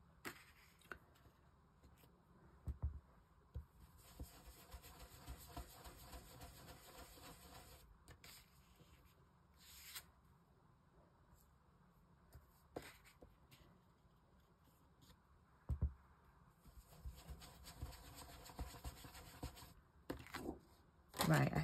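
Faint rubbing and dabbing of a foam sponge dauber over a plastic stencil laid on card, in stretches of a few seconds, with a few soft taps.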